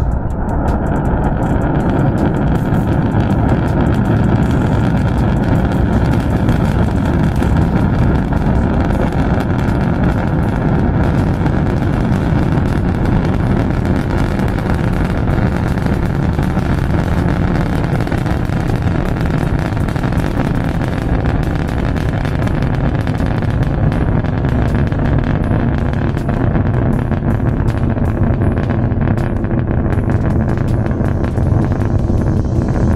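Long March 6A rocket firing its core-stage engines and solid boosters through liftoff and ascent: a loud, steady, deep rumbling noise that holds level throughout.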